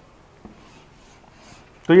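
Faint scratching of chalk on a chalkboard as a formula is written, with a light tap of the chalk about half a second in.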